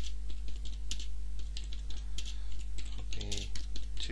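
Typing on a computer keyboard: quick, irregular key clicks over a steady low electrical hum.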